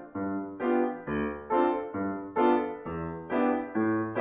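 Grand piano playing a jazz stride left-hand pattern: low bass notes alternating with chords, about two attacks a second.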